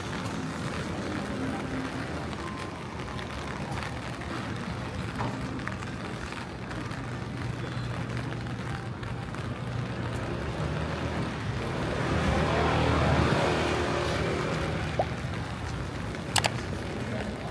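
Rainy city street ambience: a steady hiss of light rain, with a vehicle engine growing louder and passing about twelve seconds in.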